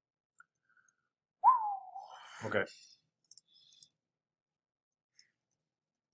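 A short pitched voice sound sliding down, running into a spoken "okay", then a few faint computer mouse clicks about three to four seconds in; otherwise near silence.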